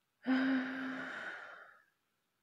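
A young woman's sigh, about a second and a half long: it starts with a steady hummed tone and trails off into breath.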